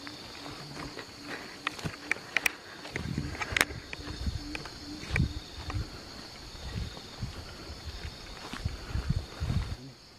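Steady high chirring of crickets and other insects, with a low pulsing call repeating about three times a second through the first half. From about three seconds in, footsteps and the crackle of dry palm fronds underfoot join in as irregular low thuds and clicks.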